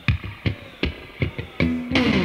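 Rock recording: electric guitar and bass play a sparse riff of short picked notes with gaps between them, ending on a held note near the end.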